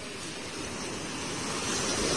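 Surf washing on a sandy beach, a rushing wash that swells steadily louder toward the end.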